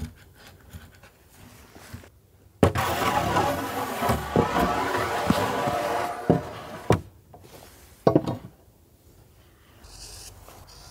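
Wooden planks handled on a timber frame: a loud, rough scrape of wood on wood lasting about three and a half seconds, then several sharp knocks as the board is set down.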